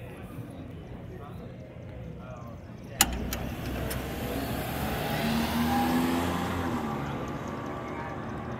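A sharp click about three seconds in, then a car passing by, its sound swelling to a peak and fading away.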